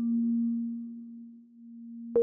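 Gentle lullaby music on a soft electric-piano-like keyboard: one low note, struck just before, rings on steadily and fades almost to nothing about one and a half seconds in, then lingers faintly in the pause before the next notes.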